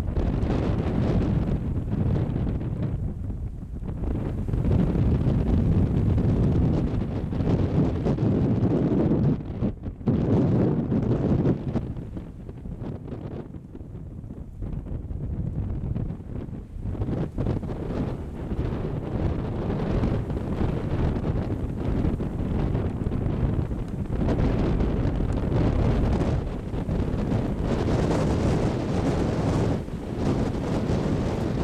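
Wind buffeting the camera's microphone in irregular gusts: a low rushing noise that rises and falls, easing for a few seconds around the middle.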